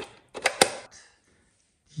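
A quick run of sharp plastic clicks and taps, four or so in the first second, from hands handling a galaxy star projector while its projection disc is changed.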